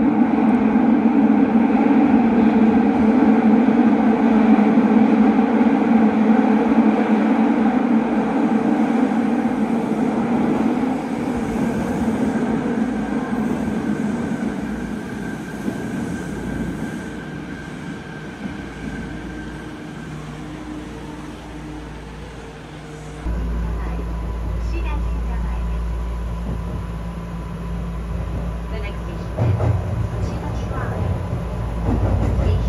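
Fukuoka City Subway Nanakuma Line train coming into an underground station, loudest early on and fading as it slows to a stop beside the platform. About two-thirds of the way in, the sound switches abruptly to the steady low rumble of the train running, heard from inside the car.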